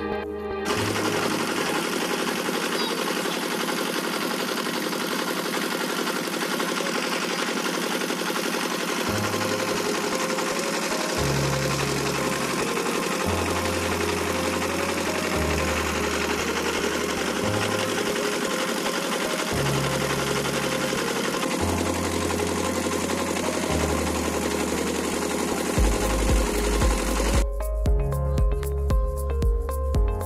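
Background music with a slow-changing bass line over the loud, steady running of a wooden river boat's engine.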